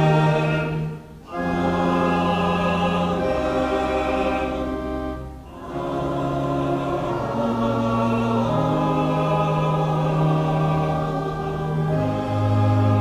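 Choir and congregation singing slow, long-held chords with pipe organ after the benediction, the close of the service. There are two short breaks between phrases.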